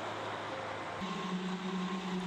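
Steady noise of highway traffic with a low hum underneath; about halfway through it changes to a steady low engine drone.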